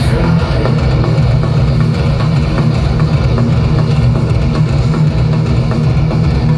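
Heavy metal band playing live at full volume through a large festival PA, recorded from within the crowd. Low-tuned eight-string guitars, bass and drums form a dense, bass-heavy wall of sound with fast, steady drum hits.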